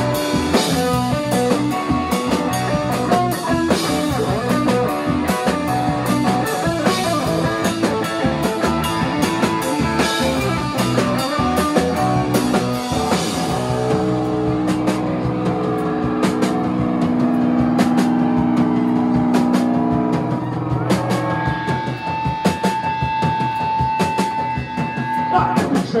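Live rock band of electric guitar, bass guitar and drum kit playing loudly. About halfway through the drumming thins out and the guitars hold long ringing notes, with a high sustained note near the end as the song winds down.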